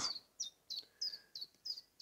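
A small bird chirping: about five short, high notes, each falling slightly in pitch, roughly three a second.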